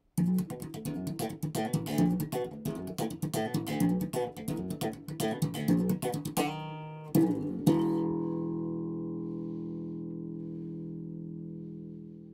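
Ibanez electric bass played fingerstyle: a quick run of plucked notes for about six seconds, then two sharp plucks and a final chord left to ring and slowly fade.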